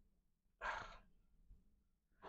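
A person's short sigh, one breath out through the mouth about half a second in.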